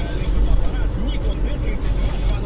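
Steady road and engine noise of a moving car, with a deep low rumble.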